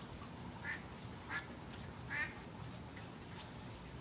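A duck quacking three times, short rough calls about half a second to a second apart, the last the loudest.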